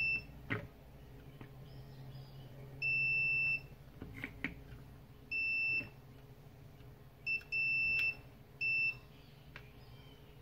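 Multimeter continuity beeper sounding in short, uneven beeps, about five in all, each starting and stopping as the probe tips make and break contact on the circuit board. Faint clicks of the probe tips on the board come between the beeps.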